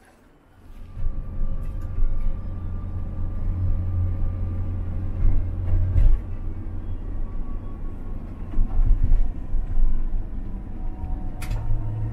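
Steady low road and engine rumble heard inside the cab of a Winnebago Revel 4x4 camper van on a Mercedes Sprinter chassis while driving, coming in within the first second. A single sharp click about six seconds in.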